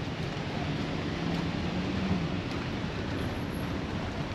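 Steady street traffic noise, with a low engine hum for the first couple of seconds.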